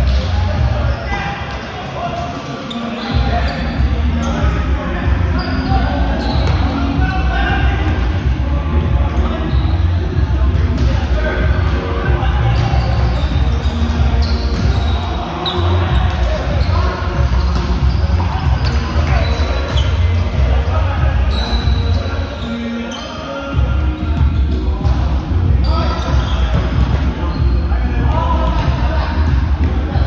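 Indoor volleyball game in a large, echoing gym: players' voices talking and calling, with the knock of the ball being hit, over a heavy low rumble that drops out briefly twice, about three seconds in and about twenty-three seconds in.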